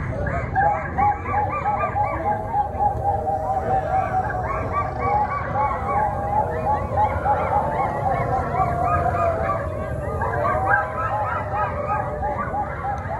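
Many choir voices making quick overlapping short calls at different pitches, several a second and out of step with each other, imitating a flock of honking birds.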